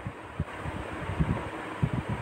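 Steady background hiss from the recording with a few soft, low thumps and no speech.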